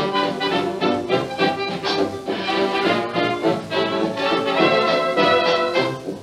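Early-1930s dance band playing an instrumental passage of a foxtrot. It is played from a Durium 78 rpm record, a resin-on-card disc, and carries heavy surface noise under the music.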